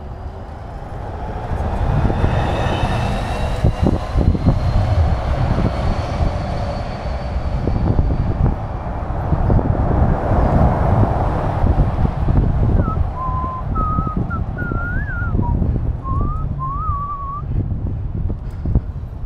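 Wind rushing and buffeting over the microphone of a moving bike-mounted camera, with a steady rumble of road noise. Near the end, a few seconds of high, wavering whistled notes that step up and down like a short tune.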